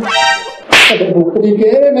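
A single loud, sharp slap, a whip-like crack a little under a second in, as the groom is struck. It comes just after a brief high-pitched tone and is followed by a man's voice.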